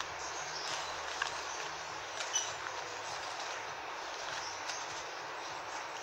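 Steady background hiss with a few faint, short ticks and rustles as artificial flower stems are handled and pushed into floral foam.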